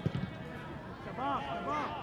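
Open-air stadium ambience with a single short thump just after the start, the sound of a football being struck into a long pass. A faint voice calls out in the second half.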